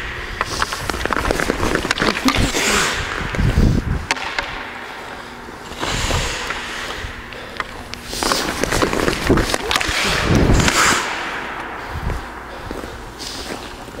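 Ice skate blades scraping and carving on rink ice in repeated surges as a player skates in. Sharp clicks and knocks come from the hockey stick striking pucks on the shots, mostly about a second in and again around eight to ten seconds.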